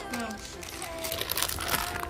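Plastic marshmallow bag crinkling as it is handled.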